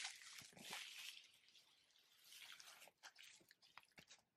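Plastic bubble wrap faintly crinkling and rustling as it is handled and pulled off a package, with irregular small crackles, busiest in the first second.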